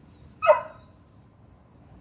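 A pit bull puppy gives one short, high bark about half a second in.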